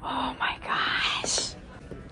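A woman speaking softly, close to a whisper, for about a second and a half, then quieter.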